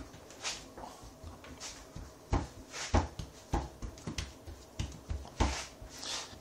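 Hands kneading soft, rested dough on a worktop: a run of soft, irregular thuds as the dough is pressed and folded, roughly every half second to a second.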